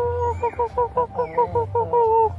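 A black rooster crowing: a long held note, then a quick run of short, choppy notes, ending in another held note.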